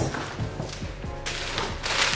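Shopping being handled: a thump right at the start, light taps, then a rustle of packaging from a little past halfway, over background music.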